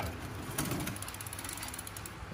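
Bicycle rear freewheel with 8-speed Shimano cogs clicking rapidly as it is spun by hand, the pawls ticking in an even run starting about half a second in.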